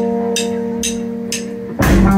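Live rock band: a sustained electric guitar chord rings under short cymbal ticks about twice a second. Near the end the full band comes in, with kick drum and bass guitar.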